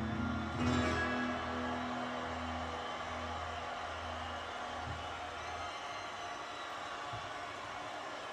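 Live band ending a song: a strummed acoustic guitar chord rings out over pulsing low bass notes, which stop about six seconds in. A steady wash of crowd noise runs underneath.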